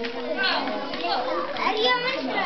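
A group of children's voices talking and calling out over one another, with no pause.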